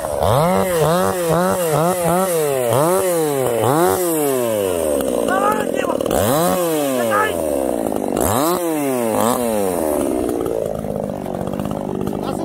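Two-stroke chainsaw being revved hard and let fall again and again: quick throttle blips about two a second, then a few longer revs, then steadier running that eases off near the end.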